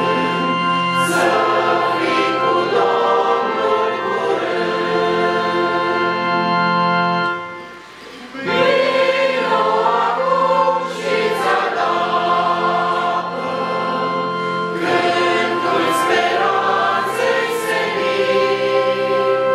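A church congregation of men and women singing a hymn together in long, held notes. There is a brief drop in loudness between lines about eight seconds in.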